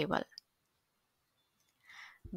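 The end of a spoken word and a small click, then a pause of near silence, with a faint breath near the end.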